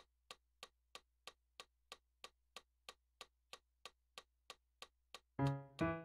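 Metronome clicking steadily, about three clicks a second. Near the end, chords on a digital piano start over the clicks.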